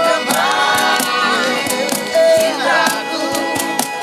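A mixed group of young men and women singing together in unison to strummed acoustic guitar, with a steady beat of about two to three strokes a second from a cajón.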